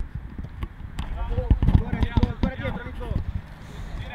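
Live sound from a floodlit five-a-side football pitch: players' voices calling out on the field, with a few sharp ball kicks in the first second.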